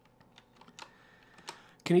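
A few faint, scattered clicks from a computer keyboard at a desk, each one short and sharp, a handful over about two seconds.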